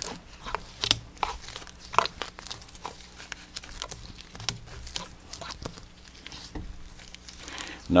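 Vinyl electrical tape being unwound and peeled off a rifle stock and handled, giving a run of irregular crinkles and crackles. The tape held the barreled action in the stock while the epoxy bedding cured.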